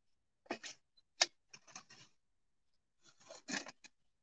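Several short rustling, scraping noises as garden pots and a bucket are handled, the sharpest about a second in and a cluster near the end.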